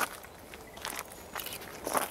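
Dry fallen leaves rustling and crackling in a few short, scattered rustles, louder near the end.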